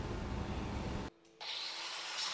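Faint, steady workshop noise that cuts out suddenly about a second in, then the faint hissing rush of an angle grinder starting in on a steel truck-frame rivet head.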